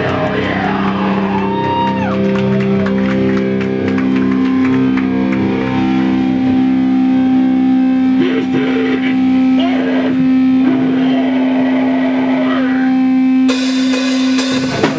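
Distorted electric guitar through an amplifier, letting long steady notes ring and drone on for many seconds rather than playing riffs, with crowd voices over it. A loud crash of drums breaks in near the end.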